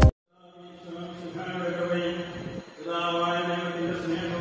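Music cuts off abruptly at the start. After a short silence, chanting fades in, voices intoning on long held notes with a brief break about two-thirds of the way through.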